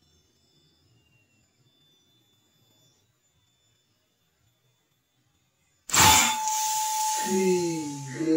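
Near silence for about six seconds, then a single sudden, loud PCP air rifle shot with a hiss trailing off and a faint ringing tone lingering for about two seconds.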